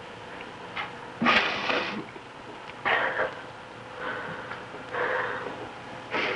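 A woman breathing heavily in deep, breathy gasps, about five over six seconds, the loudest about a second in, during an emotional embrace. A faint steady hum runs underneath.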